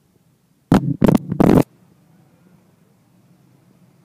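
Rumbling noise right on the microphone: three loud bursts close together about a second in. A faint steady drone of distant go-kart engines runs underneath.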